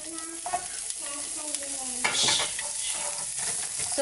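Chopped onions sizzling in hot oil in a nonstick frying pan while a wooden spatula stirs them.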